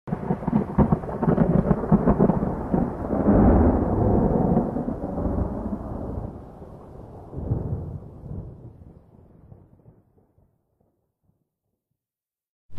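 A thunderclap that starts suddenly with crackling, then rumbles on and fades out over about ten seconds.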